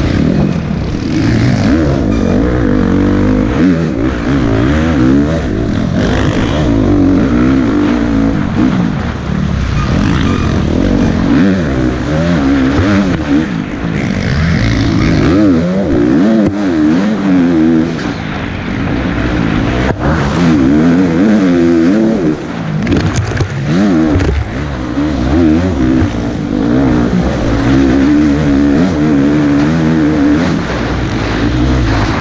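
KTM 350 XC-F four-stroke dirt bike engine, heard from the rider's helmet, revving hard and dropping again over and over as the throttle is worked through the trail. A sharp knock comes about two-thirds of the way in.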